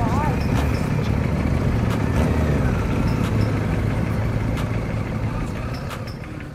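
Motorcycle engine running steadily at low speed while the bike rolls at walking pace, with people's voices around it.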